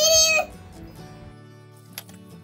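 A single short, high-pitched cry lasting under half a second at the start, then faint background music.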